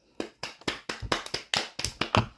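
Hands clapping in a quick, uneven run of claps, about five or six a second, close to the microphone.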